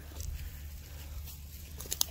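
Faint outdoor background: a steady low rumble with light rustling, and a couple of soft clicks near the end.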